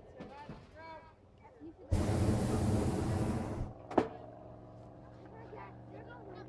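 Hot air balloon's propane burner firing one blast of just under two seconds, a loud roar that starts and stops abruptly, followed shortly by a single sharp click. Faint voices before the blast.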